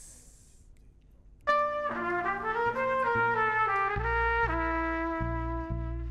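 A small smooth jazz band starts playing about a second and a half in, with a trumpet leading the melody. Bass joins underneath around four seconds in.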